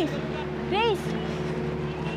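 A single short voiced call, rising then falling in pitch, about a second in, over a steady low hum.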